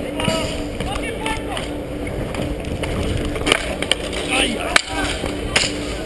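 Street hockey play heard from a helmet-mounted camera: a steady rush of wind and movement noise, a few sharp knocks, the loudest near five seconds in, and distant shouts from players.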